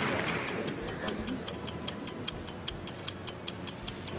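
Fast, even clock ticking, about five high clicks a second, laid over faint hall background as a waiting sound effect.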